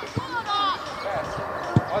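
A football being kicked: a dull thump of the ball struck shortly after the start and a louder one near the end, with a high shouted call in between.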